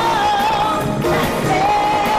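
A female lead singer sings with a live band and drum kit. She holds a long note with vibrato over the first part, then takes up another held note near the end, over drums and cymbals.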